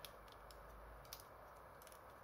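Near silence with a few faint plastic clicks from the joints of a Beast Wars Neo Heinrad Transformers figure as its legs are swung round, the clearest about halfway through.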